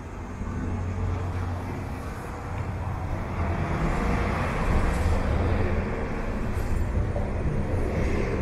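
Road traffic and bus engines: a steady low engine rumble, with a passing vehicle swelling louder from about three seconds in and easing off after six.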